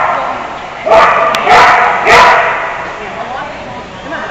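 A dog barking loudly, three sharp barks about half a second apart, each echoing in a large hall.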